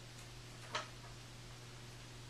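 Faint steady low hum with a single sharp click about three-quarters of a second in.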